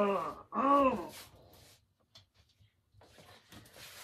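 A woman's short wordless vocal sounds, two arching voiced sighs or grunts, in the first second, then near quiet with faint movement noises toward the end.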